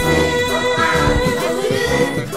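Music: a 1980s Japanese pop song with singing over instrumental backing, the voices holding long notes.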